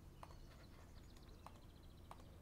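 Near silence: quiet room tone with a few faint single clicks and, about a second in, a brief rapid run of faint high ticks.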